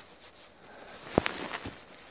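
Hazel twigs and catkins rustling as they are handled and shaken by hand. A sharp click comes a little over a second in, and a fainter one about half a second later.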